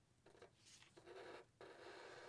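Faint scratch of a felt-tip Sharpie marker drawing lines on marker paper, in two strokes with a short break about one and a half seconds in.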